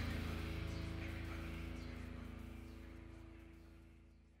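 The final sustained chord of a heavy rock song fading out slowly as the track ends.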